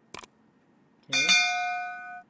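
A short click, then about a second in a single bright bell chime that rings out and fades over about a second: the click-and-bell sound effect of a YouTube subscribe-button animation.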